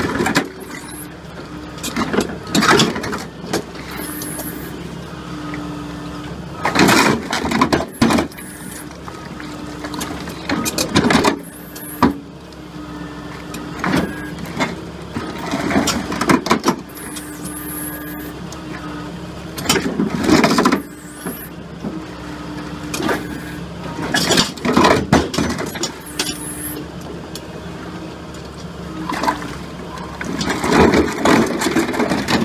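Hydraulic excavator's diesel engine running steadily under a rigid concrete pulverizer, with a hum that comes and goes. About nine loud crunching bursts spread through it as the jaws crack concrete blocks and broken pieces fall away.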